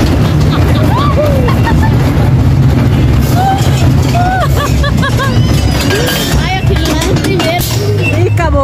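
Small roller coaster running on its track, a loud steady rumble of the ride with wind on the microphone. Riders' voices and laughs come through over it.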